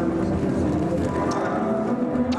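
Music playing over a dense, steady background of noise in a large hall.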